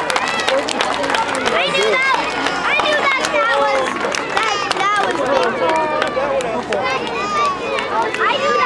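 Crowd of spectators talking and calling out, many voices overlapping at once, with scattered sharp clicks.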